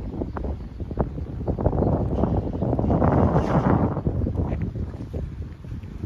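Wind buffeting the microphone, a low rumble with irregular gusts that swell about three seconds in and then ease off.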